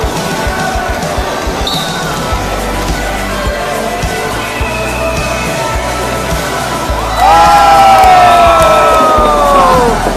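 Music with a bass line over the noise of a crowd and play in an ice rink, with scattered knocks. About seven seconds in, a much louder sustained chord of several tones comes in and slides slowly down in pitch over about three seconds.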